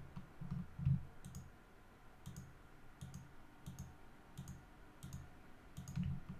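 Computer mouse clicking: short sharp clicks, often in quick press-and-release pairs, roughly one pair a second, as surfaces are picked one by one with Ctrl held, with soft low thumps beneath them.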